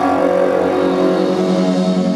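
Live psychedelic rock band playing: electric guitar over sustained droning chords, with a rapidly pulsing low note that comes in about a second in.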